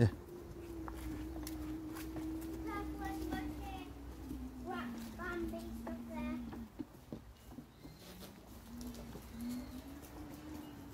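Electric motor of a TGA Maximo folding mobility scooter whining steadily while driving along a path, its pitch slowly falling as it slows and cutting out about two-thirds of the way in, then starting again with a short rising whine near the end.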